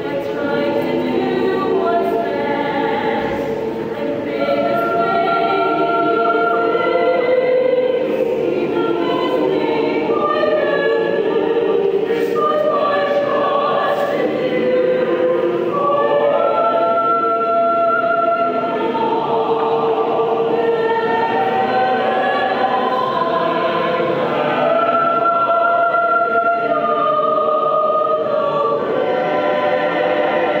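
Mixed choir of men's and women's voices singing a sacred song in harmony, with long held notes.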